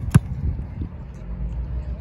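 A football being punted: one sharp, loud thud of the foot striking the ball just after the start, followed by a low steady rumble.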